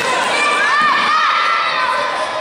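Children shouting and cheering, several high voices overlapping, with a few loud rising-and-falling calls in the middle.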